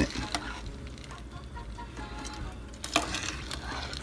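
Metal slotted spoon stirring raw beans, diced ham and water in a slow-cooker crock: soft sloshing and swishing, with a few sharp clicks of the spoon against the crock.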